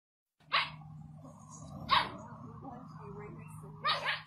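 A puppy's two short, sharp barks about a second and a half apart, then, just before the end, a Rottweiler's bark in reply. A low steady hum runs underneath.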